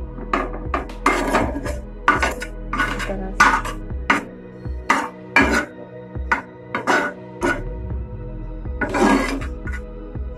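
Metal slotted spoon scraping and knocking against a nonstick frying pan while stirring and mashing a potato-and-chickpea masala, in short irregular strokes about every half second, over background music.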